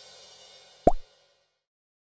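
Channel logo sting: the ringing tail of a musical hit fades out, then a single short pop sound effect comes just under a second in.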